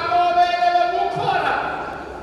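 A man's voice preaching into a microphone, holding one long drawn-out note for about the first second before tailing off.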